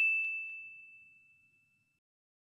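A single bright, bell-like ding sound effect ringing out with one clear high tone and fading away within about the first second, followed by dead silence.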